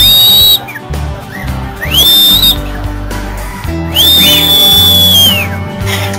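Three loud, clear whistles, each gliding quickly up to one high pitch and holding it: a short one at the start, another about two seconds in, and a longer one of about a second and a half near the end.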